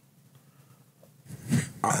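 Near silence for over a second, then a man's low, gruff vocal sound and a hesitant "uh" near the end.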